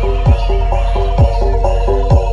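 Javanese gamelan-style music: a quick, steady run of short ringing metallic notes over deep drum strokes that drop sharply in pitch, about three strokes.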